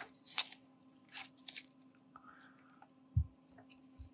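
Light rustling and small clicks of clear plastic tubing and a vitrectomy cutter handpiece being handled by gloved hands, with one dull thump a little past three seconds in, over a faint steady hum.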